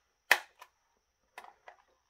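One loud, sharp plastic click early on, a fainter one just after, and a few small ticks past the middle: the plastic case of a carbon monoxide alarm being worked at its snap tabs.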